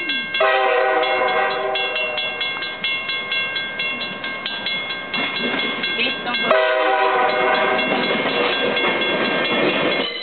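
Level-crossing warning bell ringing rapidly as a VIA Rail Budd RDC railcar approaches, sounding two long horn blasts about six seconds apart. The rumble of the railcar grows toward the end as it reaches the crossing.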